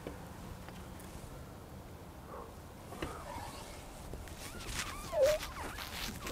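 Quiet handling of a heavy English longbow and arrow, with faint rustles and light clicks as the arrow is nocked. About five seconds in, as the bow is drawn, there is a short strained sound that falls in pitch.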